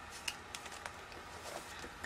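Faint rustling and a few light clicks of a plastic page-protector sheet being turned in a ring-bound 12x12 scrapbook album.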